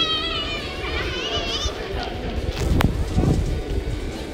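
A high-pitched, wavering voice calls out twice in quick succession over a busy background hubbub, and a sharp knock comes near the end.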